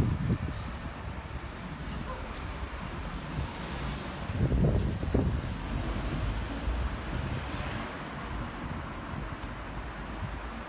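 Street traffic noise: cars running along a town street with a steady low rumble, swelling briefly louder about halfway through.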